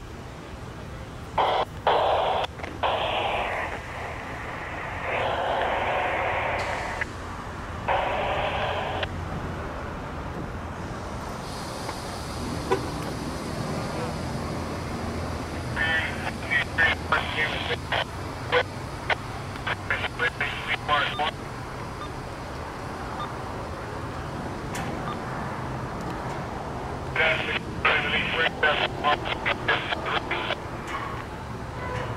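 Railroad radio scanner: short, muffled transmissions in the first several seconds, then bursts of crackling static, over a steady low rumble.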